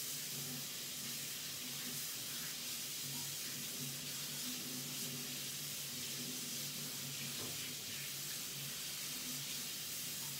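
Water running from a tap at a sink off-camera, a steady hiss, while paint-covered hands are washed. A faint low hum comes and goes underneath.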